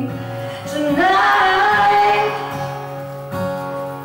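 A woman singing a country ballad over her own acoustic guitar strumming; a new sung phrase starts about a second in and holds a long note, with the guitar chords ringing on beneath it.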